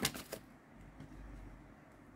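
A deck of tarot cards being handled and shuffled: a few quick papery snaps right at the start, then faint handling.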